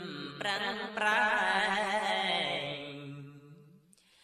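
A man's solo voice chanting Khmer Buddhist smot, the melismatic sung recitation of Buddhist verse. He holds long notes with a wavering, ornamented pitch, and the phrase fades out near the end.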